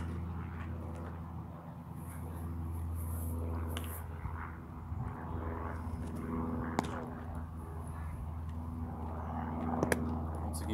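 A baseball smacking into leather gloves: a sharp pop at the very start, another about seven seconds in as the pitch reaches the catcher's mitt, and one near the end as the return throw is caught. Under it runs a steady low mechanical hum.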